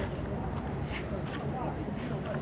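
Faint, indistinct voices over a steady low street background, with no clear words.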